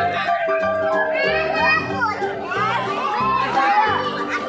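Young children shouting and calling out in high voices while playing in a swimming pool, over background music with a steady beat.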